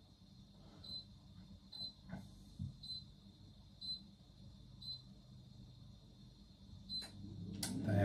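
Faint kitchen room tone with a few soft knocks and handling sounds from someone moving about nearby, and a faint short tick about once a second. Near the end, rustling grows louder as the person comes close to the microphone.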